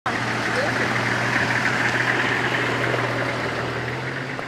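A convoy of SUVs and a pickup truck driving slowly past on a dirt road: a steady mix of engine hum and tyre noise that fades slightly toward the end.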